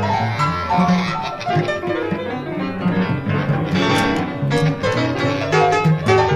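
Free-improvised music from an eight-piece ensemble: several instruments playing dense, overlapping, unmetered lines of short notes at many pitches at once, with a cluster of sharp attacks about four seconds in.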